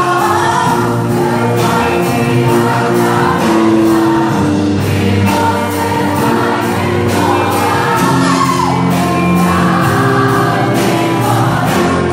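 A woman singing a gospel song into a handheld microphone over amplified musical backing with a steady beat.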